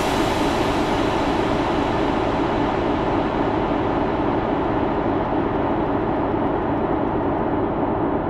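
Electronic dance music from a breakbeat mix, in a beatless passage: a steady, rumbling noise-like synth drone, its high end gradually fading as if filtered down.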